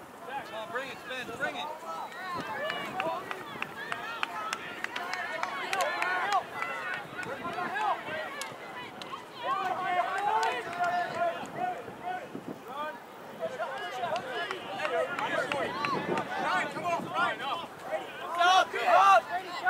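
Indistinct calling and chatter from players, coaches and sideline spectators, several voices overlapping with no clear words.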